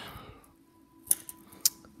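Two short, sharp plastic clicks about half a second apart, from clear plastic coin flips holding gold one-tenth-ounce coins being handled.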